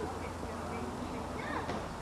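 A bee buzzing with a steady, low hum, with faint voices behind it.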